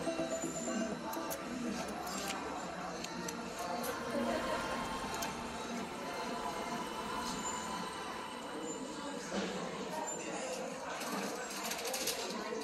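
Shop ambience: faint background music and indistinct voices, with scattered light clicks of clothes hangers as garments are pushed along a rack.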